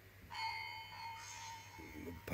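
A bell-like chime strikes about a third of a second in and rings on, slowly fading. A second, higher note joins about a second in.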